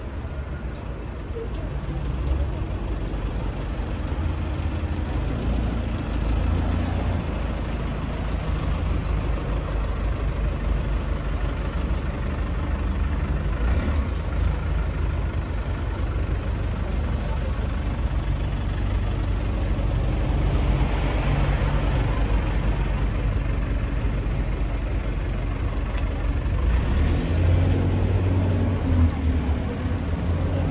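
Road traffic with buses and cars running past, a low engine rumble throughout that grows louder near the end as a vehicle passes close.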